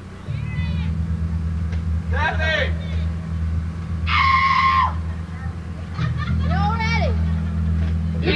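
Live rock band on stage: a steady low bass drone under short, high phrases that bend and waver. There is one long held note about halfway through, and a phrase with vibrato near the end.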